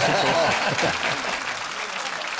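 Studio audience applauding, with laughter and voices over it in the first second; the applause eases off slightly toward the end.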